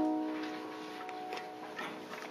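Grand piano: a chord struck just before, ringing and slowly fading, with a few short, soft notes played over it.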